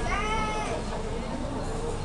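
A single high-pitched, drawn-out call that rises and then falls in pitch, lasting under a second at the start, over background noise.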